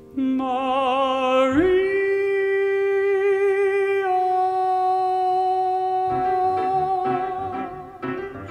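A male singer holding the long closing note of a Broadway ballad with vibrato, stepping up to a high note about a second and a half in and sustaining it. Piano accompaniment goes with the voice, with a second sustained note joining partway through and chords entering near the end.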